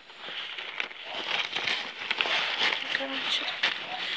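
Plastic liner of an opened feed sack crinkling and rustling as it is handled, an uneven crackle of plastic.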